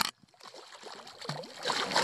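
Water splashing and lapping against a canoe's side, building near the end as a hooked brook trout thrashes at the landing net.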